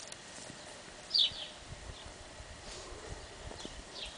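A large dog flopping down and rolling in grass: faint rustling and a few soft thumps, with one brief high, falling squeak about a second in.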